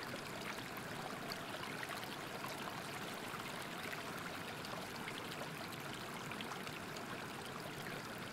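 Steady sound of flowing stream water, an even rush with faint flickers of burbling and no change in level.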